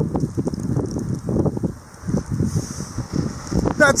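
Wind gusting on the microphone with an irregular low rumble. About halfway through, a car on the snowy road comes in as a steady hiss and keeps going to the end.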